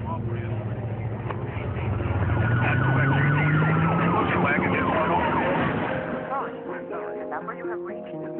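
A car engine revving as it speeds away, its pitch rising, with a siren wailing up and down over it. Music comes in near the end.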